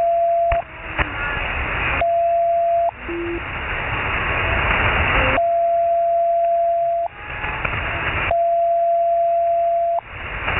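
Shortwave receiver audio from the 40-metre band in lower sideband: loud static hiss broken four times by a steady whistle of one pitch, an unmodulated carrier on the frequency keyed on for one to two seconds at a time. The hiss drops away each time the whistle sounds.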